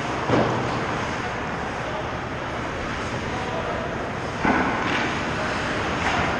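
Ice hockey play on an indoor rink: a steady wash of skates scraping the ice and arena noise, with two sharp hits, one just after the start and one about four and a half seconds in, from sticks, puck and players against the boards.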